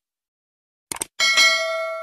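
Subscribe-button animation sound effects: a quick double mouse click about a second in, then a bright notification bell chime that rings out and fades.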